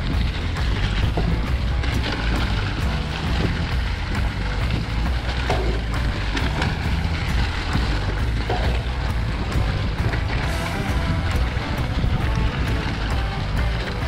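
Mountain bike ridden fast over a leaf-covered forest trail: steady tyre and riding noise with a low rumble and frequent sharp clicks and rattles of the bike over bumps. Music plays along with it.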